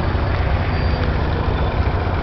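Engine of a wooden abra, Dubai's traditional water taxi, running steadily underway: a continuous low rumble.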